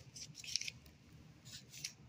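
Paper pages rustling and scraping as they are handled, in two short bursts, the second near the end.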